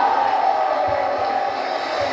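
A stage music show heard from a television: a singer's held note trails off into audience crowd noise and cheering.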